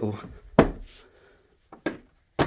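An iron hook latch on an old wooden door being worked by hand. There is one sharp clack about half a second in, then two light clicks near the end.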